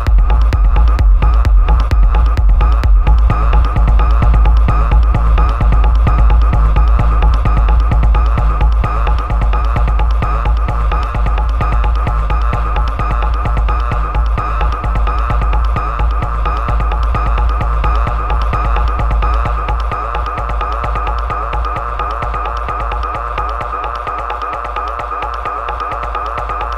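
Dark techno music: a heavy, deep bass pulse with fast even beats under a sustained mid-pitched synth drone. The track gradually gets quieter and the bass thins out in the second half.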